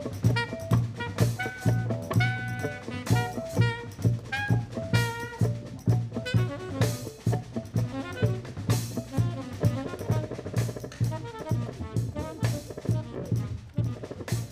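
Live jazz quartet playing: tenor saxophone and hollow-body electric guitar lines over upright bass and drum kit, with a steady, regular pulse.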